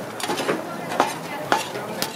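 Kitchen knife chopping beef for tacos on a cutting board: sharp, evenly spaced chops about two a second.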